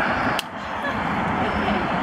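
A single sharp slap of two hands meeting in a high five, about half a second in, over steady outdoor background noise.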